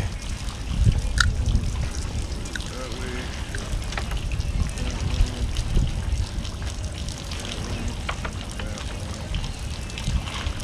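Sea water moving and splashing around concrete pier pilings under a steady low rumble, with faint voices in the background.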